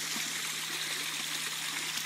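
Spring water running and splashing steadily into a springbox, with the low steady hum of a portable generator underneath.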